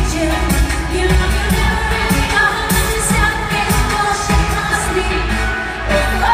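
Live synthpop dance music through an arena sound system: a loud, steady drum beat with heavy bass under a singing voice, heard from the crowd in the stands.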